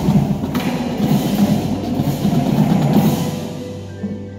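A winter percussion drum battery of snares, tenor drums and bass drums playing a loud, dense passage, fading away near the end.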